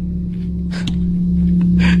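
Microphone boom arm springs set vibrating by a knock on the mic: a steady, low ringing hum that slowly swells. A short laugh comes near the end.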